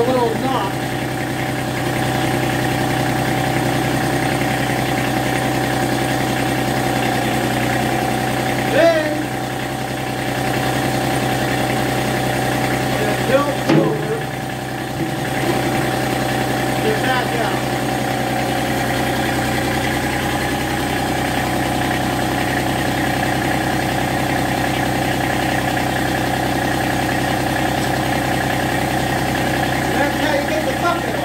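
Massey Ferguson GC1723E sub-compact tractor's three-cylinder diesel engine running steadily while the front loader is worked to release the bucket from its quick-attach. A few brief short sounds stand out over the engine partway through.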